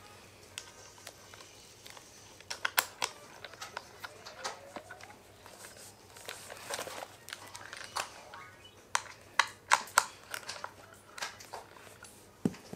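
Scattered light clicks and taps of a small metal Allen key on the cleat bolts of a cycling shoe, with the shoe being handled and turned. The sharpest clicks come in two clusters, a few seconds in and again near the end.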